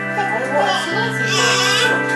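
A newborn baby crying, a wavering cry that starts just after the beginning and is loudest and highest near the end, over steady background music.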